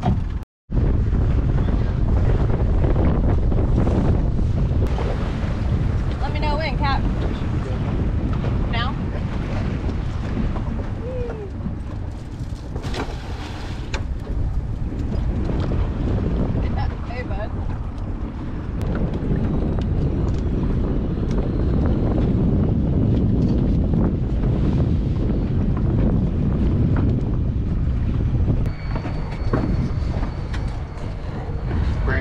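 Steady, heavy wind rumbling on the microphone aboard a small fishing boat on open water, cutting out for a moment just after the start.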